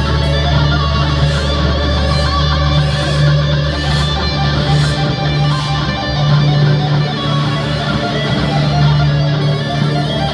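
Dean electric guitar solo played live through a loud amplified rig. Higher lead notes, including an arching bent note about a second in, ride over a low note that is held and repeated.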